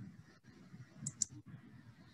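Two faint computer clicks about a second in, over low room noise, as the presentation slide is advanced.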